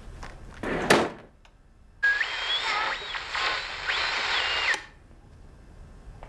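A kitchen drawer pushed shut with a thud about a second in. Then a portable radio comes on with static hiss and whistling tones that slide up and down, as when tuning between stations, and it cuts off abruptly about five seconds in.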